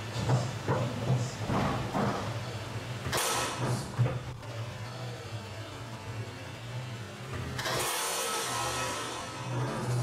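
Foosball table in play: sharp knocks of the ball and the rod men over background music, with a rushing noise swelling up about eight seconds in.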